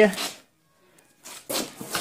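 A man speaking Russian, with a short near-silent pause in the middle. No polisher is running.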